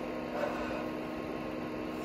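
Steady low mechanical hum with a light hiss, the running noise of a small room, with a faint soft rustle about half a second in.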